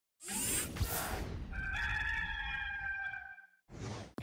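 A rooster crowing once, a long held call, as the Gamecocks' rooster-crow sound effect. It comes after a rushing noise burst, and a short second whoosh follows near the end.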